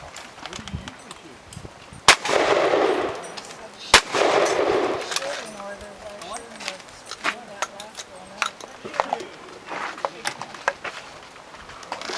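Two shotgun shots about two seconds apart, each followed by about a second of echo. After them come lighter metallic clicks and clacks as the break-action shotgun is opened and handled for reloading.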